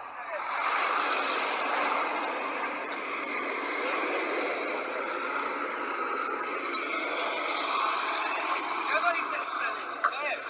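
Street ambience dominated by many voices at once, a steady mixed hubbub of people talking and calling out, with traffic beneath it.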